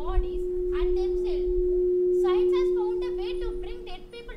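A steady single-pitched tone, swelling to its loudest a little past halfway and stopping just before the end, with a girl's voice speaking over it.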